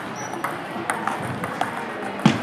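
Table tennis balls clicking off paddles and tables, a run of short, sharp clicks at irregular spacing from more than one table in a large sports hall.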